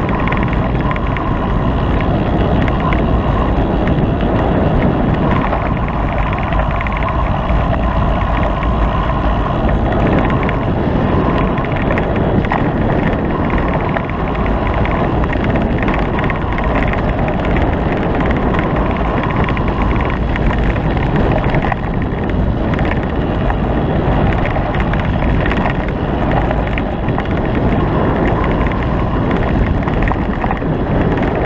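Steady wind buffeting on a moving ride-mounted camera, over the rumble and rattle of tyres on a rough dirt and gravel track.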